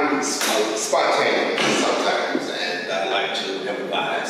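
A man talking in a large, echoing room.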